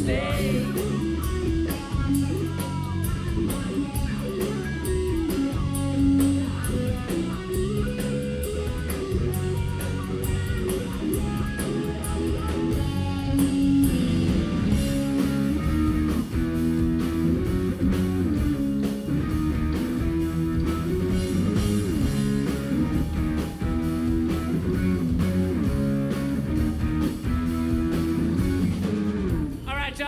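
Live rock band playing an instrumental passage without vocals: electric guitar over bass guitar and drum kit.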